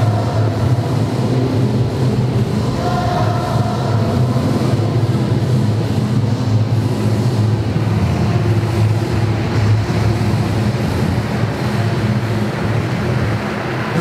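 Continuous rumble of many quad roller skates rolling on a hard sports-hall floor, mixed with music played through the hall's speakers.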